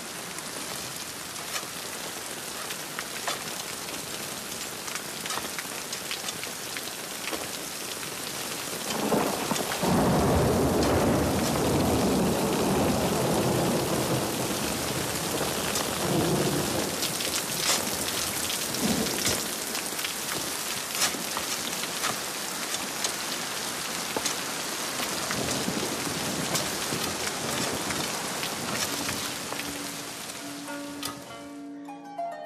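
Rain falling steadily, with a long roll of thunder that breaks about a third of the way in, rumbles loudest for a few seconds, then dies away in smaller rumbles.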